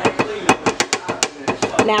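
A quick, irregular run of sharp metal clinks and taps, about five or six a second: a spoon scraping thick cream of chicken soup out of a can into the pan.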